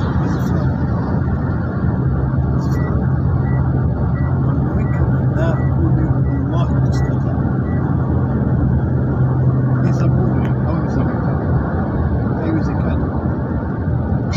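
Road and engine noise inside a moving vehicle's cabin, a steady rumble with a low hum that drops away about eleven seconds in. A short high beep repeats about two and a half times a second for a few seconds near the middle.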